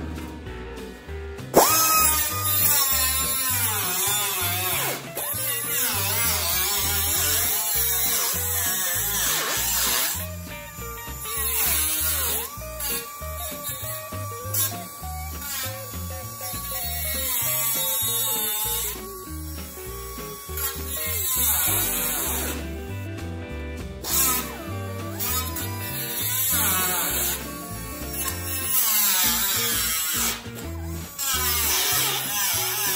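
Small air-powered cutoff wheel whining as it cuts a line through the sheet-steel roof seam, starting suddenly about a second and a half in; its pitch sags and recovers as the wheel bites, and it stops and restarts a few times. Background music with a steady beat plays underneath.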